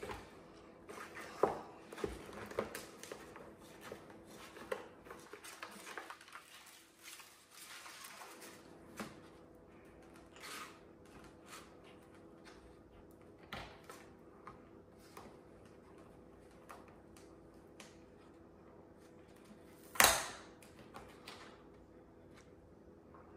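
Vinyl decal sheets and plastic dirt-bike panels being handled on a table: scattered small rustles and clicks, with one sharp knock about twenty seconds in. A faint steady hum runs underneath.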